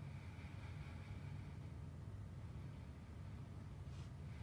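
Quiet room tone: a faint steady low hum with light hiss, and no distinct events.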